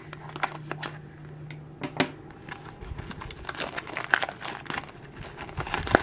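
Scissors snipping into the plastic film wrapper of a small toy blind basket, then the film crinkling as it is torn and pulled off, in irregular crackles and snaps.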